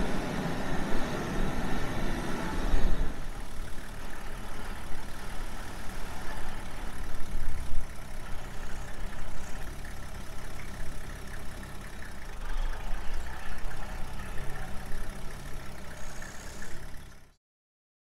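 Game-drive vehicle's engine running, heard from on board: louder for the first three seconds, then a steadier low rumble. The sound cuts off suddenly near the end.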